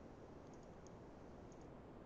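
Near silence: faint room tone with a few faint computer mouse clicks, a pair about half a second in, one just before a second, and another pair about a second and a half in.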